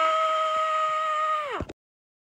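A man's voice holding one long, high-pitched yell. Near the end it plunges steeply in pitch and cuts off abruptly.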